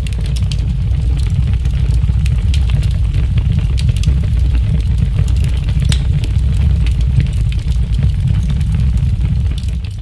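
A steady deep rumble with scattered crackles and clicks over it, with no music.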